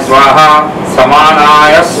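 A priest chanting Sanskrit puja mantras in a sing-song recitation, two long drawn-out phrases.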